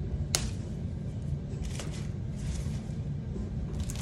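Faint background music with a steady low beat, and one sharp snip of scissors cutting a tag off about a third of a second in, followed by faint rustling of handling.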